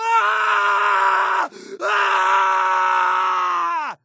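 A person screaming: two long held cries with a short break for breath between them, the second falling in pitch as it dies away.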